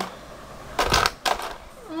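A quick cluster of light clicks and clatters about a second in: small toy letter and number pieces being handled and knocked together on the floor.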